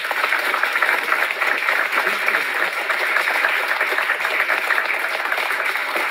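An audience applauding: dense, steady clapping throughout.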